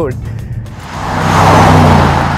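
Mercedes-AMG E 63 S's 4-litre twin-turbo V8 driving past at speed: a steady engine note with a rush of tyre and wind noise that swells up to a loud peak near the end.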